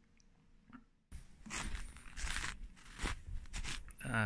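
Footsteps crunching in snow: a string of uneven steps starting about a second in, after a moment of faint room tone.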